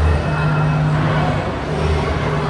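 Steady low hum and rumble of background noise in a large, busy indoor hall.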